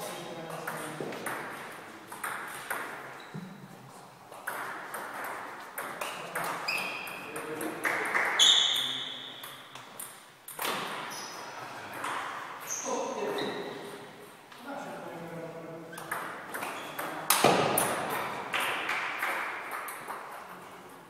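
Table tennis ball clicking off paddles and the table in quick rallies, with pauses between points.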